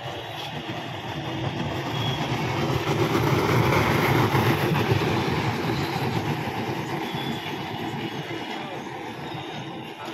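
Tyres dragged on ropes across a gravel ground: a steady rough scraping rumble that swells to its loudest about four seconds in, then slowly fades.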